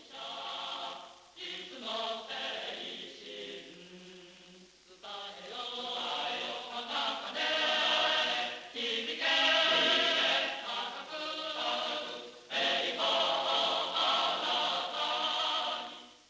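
A choir singing slow, long-held chords in phrases, softer for a couple of seconds near the middle of the first third.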